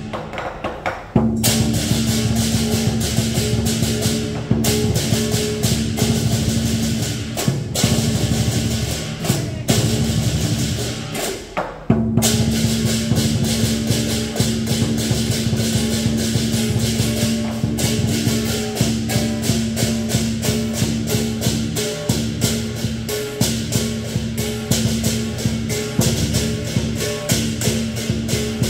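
Lion dance percussion: a big drum, clashing hand cymbals and a gong playing a steady, driving beat for a dancing lion. It briefly drops back about a second in and again just before the middle, then comes back in full.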